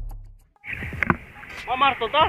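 Low intro music dies away, and after a brief gap the field sound of net fishing in shallow sea water cuts in: a steady hiss of water, a couple of knocks about a second in, and a short call from a man's voice falling in pitch near the end.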